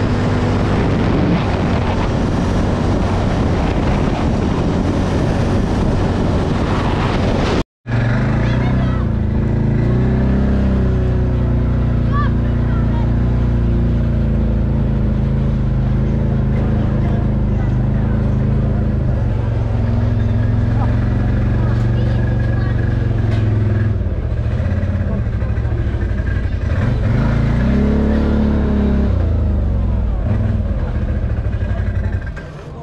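A quad bike's engine and wind rush while riding along a road. After a sudden cut, the engine runs at low speed with a steady low hum, and its revs rise and fall briefly twice as it rolls slowly and pulls up.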